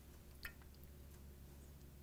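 Near silence over a low room hum: water poured slowly from a drinking glass into a glass petri dish, with one faint click about half a second in.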